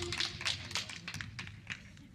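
Sparse, scattered hand claps from a small audience as a song's backing music cuts off, the claps thinning out over about two seconds.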